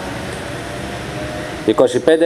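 Steady background noise with a faint hum during a pause in a man's speech; his voice resumes near the end.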